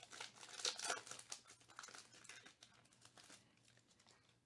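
Foil wrapper of a Panini Chronicles baseball card pack crinkling and tearing as it is peeled open by hand. The crackling is loudest in the first second and a half, then thins out and fades.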